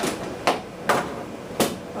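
Three short knocks as a small metal network appliance, a Polycom VBP 4300T, is handled and set down on a desktop.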